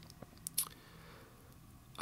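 Quiet room tone with a few faint short clicks; the loudest comes about half a second in.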